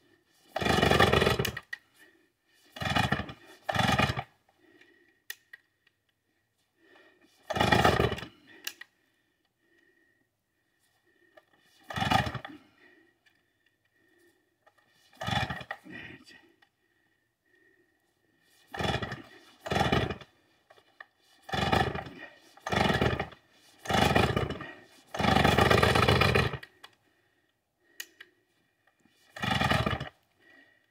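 Vintage Stihl 045 AV two-stroke chainsaw being pull-started: about a dozen separate rope pulls, each cranking the engine for about a second, with short pauses between them. The engine does not settle into a steady run.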